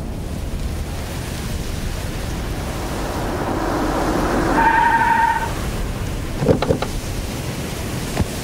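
An SUV approaching over steady wind-like outdoor noise, growing louder towards about five seconds in. A short high tone sounds for about a second around then, and a brief sound follows near seven seconds.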